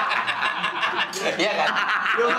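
People talking with chuckling laughter mixed in.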